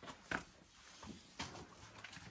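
Shoes scuffing and tapping on rock, three short sounds with quiet between.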